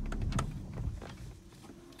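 Jaguar XF engine being switched off at idle: a couple of clicks, then the low running hum dies away within about the first second, leaving the cabin quiet.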